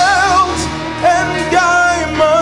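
Gospel worship song: a singer holds long notes with a wavering vibrato over an instrumental accompaniment, one held note at the start and another through the second half.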